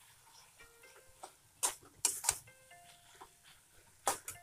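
A metal spatula scraping and knocking against an aluminium kadai while stirring thick cooked greens, with a few sharp strokes a little past the middle. Soft background music with sustained notes plays under it.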